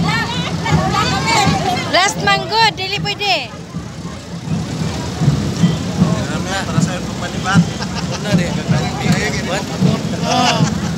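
A crowd of people walking and chatting, with overlapping voices, bursts of shouting or laughter, and a laugh near the end. A motor vehicle's engine runs underneath as a steady low hum.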